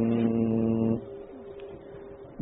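A monk chanting in Pali holds one long steady note, which breaks off about a second in into a short pause.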